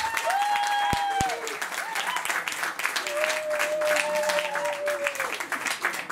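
Audience clapping and cheering, with two long held whoops from the crowd: one at the start and one from about three seconds in.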